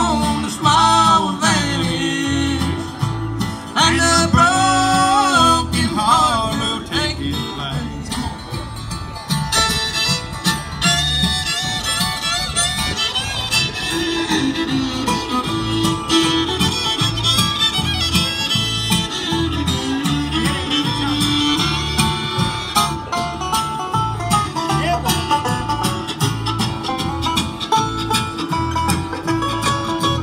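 Bluegrass band playing an instrumental break between verses: acoustic guitar, fiddle and banjo over a steady bass beat, with sliding lead notes in the first few seconds.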